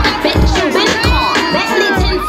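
A crowd cheering and shouting over loud hip-hop music. The beat's heavy bass cuts out about half a second in, leaving the many voices on top.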